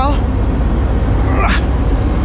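A steady low engine rumble runs throughout. A short vocal sound from a person comes about one and a half seconds in.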